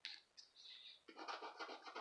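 A coin scratching the coating off a paper scratch-off lottery ticket: a brief scrape at the start, another shortly after, then quick back-and-forth strokes from about a second in.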